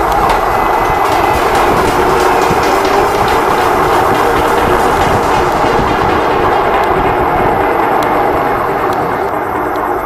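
Steady wind and road rumble on the microphone of a small body camera mounted on a moving electric unicycle, with a few light clicks later on.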